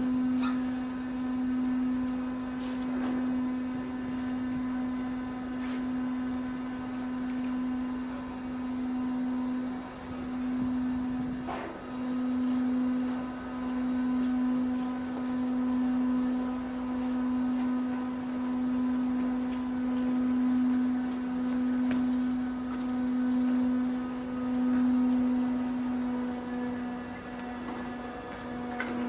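Steady low hum of a passenger ship's machinery, one constant tone with overtones, swelling and easing slightly every couple of seconds.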